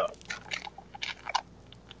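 A cardboard toy box being torn open along its perforated seal: a series of short, irregular crackles and rips.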